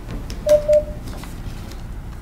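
Two short electronic beeps at the same mid pitch, one right after the other, about half a second in, over a low steady room hum.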